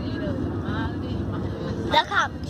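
Steady low rumble of road and engine noise inside a moving car's cabin, with faint voices and a brief louder sound right at the end.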